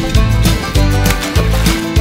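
Background music: an upbeat guitar track with a steady beat.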